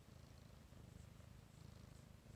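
Domestic cat purring quietly in a low, even rumble while its head is being stroked.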